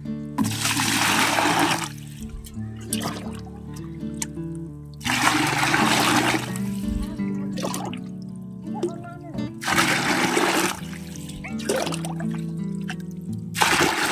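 Water scooped from a spring pool with a steel pot and poured into a plastic bucket: four splashing pours a few seconds apart, over background music with long held notes.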